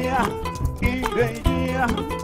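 Live acoustic band music: double bass notes and a calabash drum beating out a steady groove under plucked strings, with a voice singing wordless 'na na' syllables over it.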